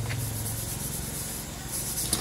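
A metal pan being scrubbed by hand, a steady scratchy scouring with the odd light clink of metal, over a low steady hum.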